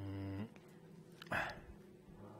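A man's low, hesitant hum lasting about half a second, followed a little past halfway by one short, sharp noise.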